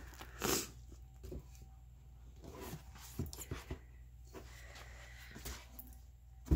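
Coffee-soaked, wet paper pages being peeled apart by hand, with soft sticky rustles and small taps, over a low steady hum. A short, louder noisy sound comes about half a second in.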